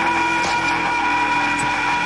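Film soundtrack: a loud, steady drone of several held tones over a constant hiss.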